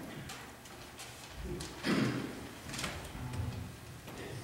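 Scattered soft knocks and rustles of instruments and music stands being handled as the players ready to start, with a louder short thump about two seconds in.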